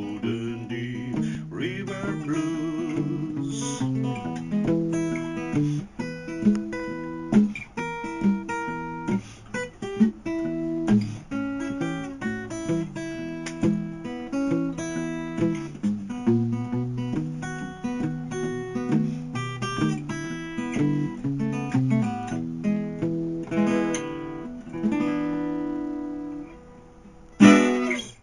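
Solo acoustic guitar playing an instrumental blues passage, bass notes under a picked melody. The notes thin out and fade near the end, followed by one sudden loud strike just before the close.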